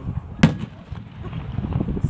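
Aerial fireworks: one sharp, loud bang about half a second in, followed by fainter, lower pops and rumble from further bursts.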